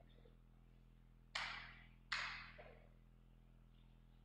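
A pause in the amplified sermon audio: a steady low electrical hum with low room tone, broken by two short hissing bursts a little under a second apart, each starting sharply and fading over about half a second.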